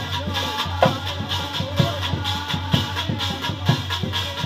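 Dehati folk devotional music: a brass plate set on a clay pot beaten in a fast, steady rhythm, with a heavier stroke about once a second over a ringing metallic shimmer.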